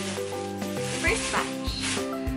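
Background music with held notes, a soft low beat coming in about a second in, over the crinkling of plastic packaging being handled.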